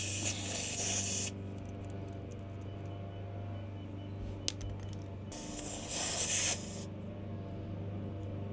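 Air hissing from a van's tyre valve in two short bursts, one at the start and one about five seconds in, as the screw-on pressure-sensor cap is taken off and put back on. In between, a faint row of high beeps comes from the tyre pressure monitor's low-pressure warning.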